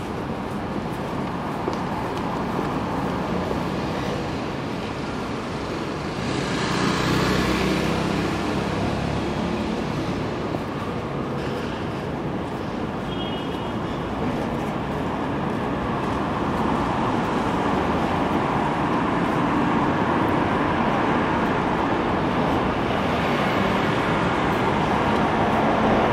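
City street traffic noise, with cars passing steadily on the road beside the pavement. One vehicle passes louder about seven seconds in, and the traffic grows a little louder toward the end.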